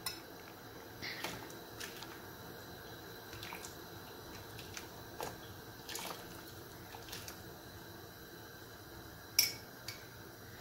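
A metal spoon and an enamel bowl clinking lightly against a large metal pot of water as rice is stirred in: a few scattered clinks, with a sharper one near the end.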